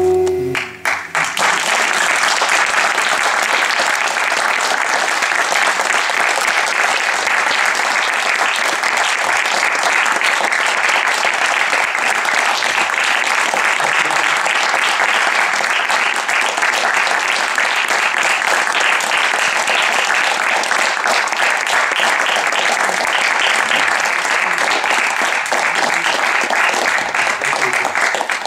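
The last notes of a bansuri bamboo flute and tabla stop within the first second, then an audience applauds steadily.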